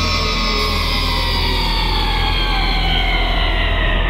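Uptempo hardcore electronic track in a breakdown: a sustained synth chord slowly gliding down in pitch over a steady low bass drone.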